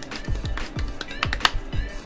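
Fingertips drumming on a raw beef steak on a plate, working the salt and pepper into the meat: a run of quick, irregular taps, over background music.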